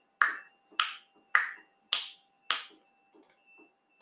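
Five sharp, evenly spaced clicks, a little under two a second, marking a three-second countdown, then quiet. A faint steady tone runs underneath.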